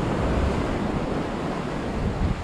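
Waves breaking and washing over rocks at the shoreline, a steady rush of surf, with wind buffeting the microphone.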